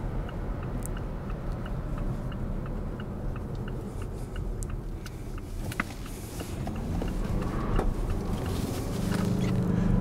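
Cabin sound of a Mazda6's 2.2-litre SKYACTIV-D turbodiesel with six-speed automatic through a right turn: a quiet engine hum and road noise, with the turn signal ticking about twice a second. In the last few seconds the engine pulls harder and its note rises as the car accelerates out of the corner, with the engine dropping in revs at the shifts and a little tyre squeal on the damp road.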